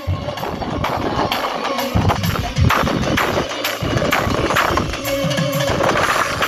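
Live drum-led folk music played through stage PA speakers, with a steady run of drum strokes and a held pitched line joining near the end.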